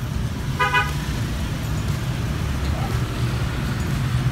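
Steady rumble of road traffic, with a single short vehicle horn toot a little over half a second in.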